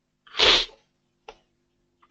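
A loud, short burst of breath noise from a person close to the microphone, lasting about half a second. A single keyboard click follows about a second later.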